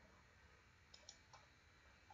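Faint computer mouse clicks, three in quick succession about a second in, over near-silent room tone.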